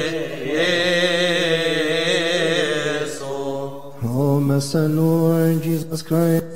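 A man's voice chanting a Coptic liturgical hymn, holding long drawn-out notes with a wavering pitch; the line falls away about three and a half seconds in and a new held note begins about four seconds in.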